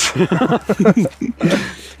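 A man's voice in short broken bursts that die away about one and a half seconds in.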